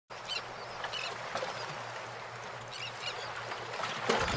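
Steady rush of water and wind from a motorboat moving through the sea, with a low engine hum underneath and a few short, high chirps scattered through.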